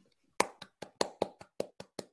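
One person clapping hands, about five claps a second, starting about half a second in.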